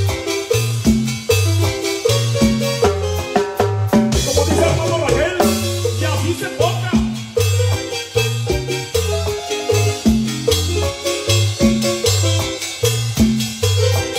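Live cumbia band playing an instrumental passage: electric bass line, drum kit and keyboard in a steady, repeating dance rhythm.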